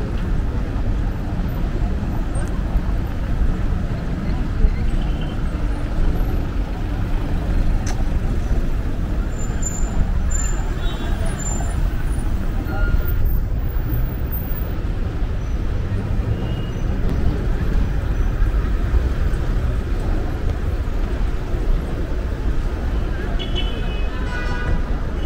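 Street ambience of steady traffic, cars driving past on a cobbled street, with indistinct voices of passers-by.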